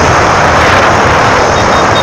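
Loud, steady wind rush over the camera microphone with road and engine noise from a vehicle travelling along a road.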